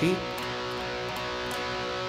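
Electric guitar playing a B5 power chord: one stroke right at the start, then the chord rings on steadily.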